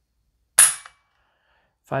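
One sharp metallic snap as the Palmetto State Armory EPT trigger of an unloaded AR-15-type pistol breaks and the hammer falls, pulled by a trigger pull gauge. The trigger breaks at about 5.5 pounds.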